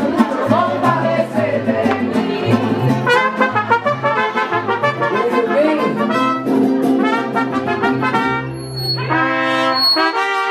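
Mariachi band playing an instrumental passage, trumpets to the fore over a bass line of held notes, with a bright trumpet phrase near the end.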